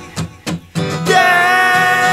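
Song with guitar accompaniment: a brief break of about a second with a few short guitar strums, then a voice comes back in on one long held note over the guitar.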